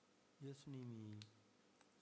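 Near silence between spoken phrases. About half a second in, a man's voice makes a brief, soft, wordless sound that falls in pitch, with a few faint mouth clicks.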